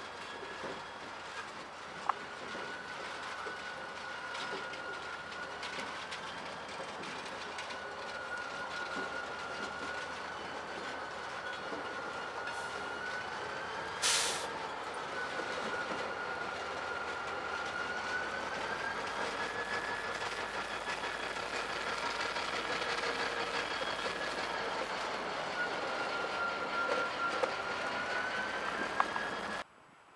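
CSX diesel locomotive rolling slowly past, its wheels squealing on the rail with a steady, gently wavering high tone, slowly growing louder, with a few sharp clanks and a brief loud burst of noise about halfway through. The sound cuts off suddenly just before the end.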